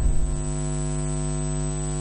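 Steady electrical mains hum: a low buzz with a stack of even overtones, holding unchanged with no other sound over it.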